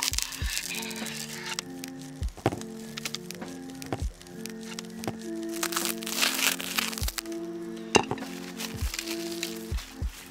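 Plastic stretch wrap crinkling and tearing as a utility knife slices it off a paramotor hoop section, with several sharp cracks, over background music with sustained notes. The crinkling comes in bursts at the start and again about six seconds in.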